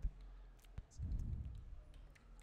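Computer keyboard being typed on: a few faint, separate key clicks, with a brief low hum about a second in.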